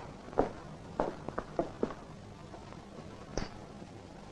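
Quiet, irregular footsteps and light knocks on a floor in the first two seconds, then one sharper click about three and a half seconds in.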